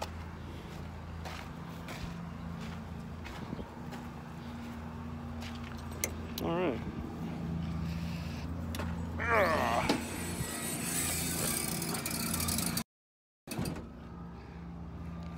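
Semi-truck diesel engine idling with a steady low hum, with scattered light clicks and knocks. A steady hiss comes in near the end and cuts off abruptly.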